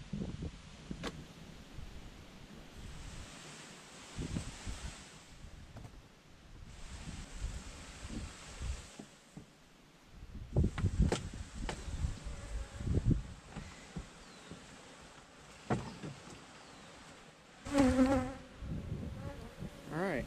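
Honeybees buzzing around an opened hive, with several knocks and scrapes of the hive's wooden boxes and frames being handled, the loudest cluster near the end.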